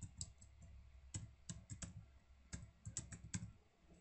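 Faint typing on a computer keyboard: irregular keystrokes in two short runs, then a pause near the end, as an email address and password are keyed in.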